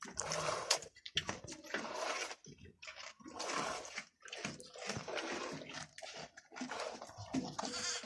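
Milk squirting from a goat's teats into a plastic bucket of frothy milk during hand milking. Short hissing spurts come roughly once a second, one with each squeeze.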